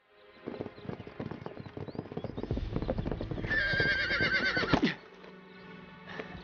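Horses' hoofbeats, a quick run of strikes that grows louder, then a horse whinnies loudly about three and a half seconds in, a wavering call of over a second that drops in pitch as it ends.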